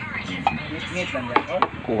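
Metal spoon and fork clinking against a bowl as a creamy young-coconut salad is mixed, with a few sharp taps, two of them close together a little past the middle.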